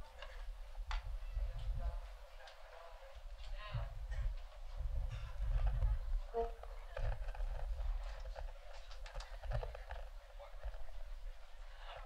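Pause between tunes in a live jazz concert recording: faint voices in the crowd and on stage with scattered knocks and taps from the musicians, over a low rumble.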